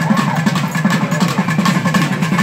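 Loud, dense festival drumming with fast, continuous strokes, mixed with the shouts of a large crowd.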